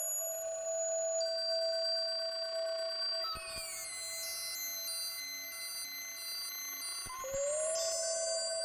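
Computer-generated electronic music: several pure tones held together as a steady chord. About three seconds in a click changes the chord and one tone glides down, then a low tone pulses on and off in short even beats. Near the end another click comes and a tone slides up back into the held chord.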